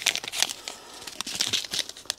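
A small packet crinkling in the hands as it is handled and folded, with irregular crackles.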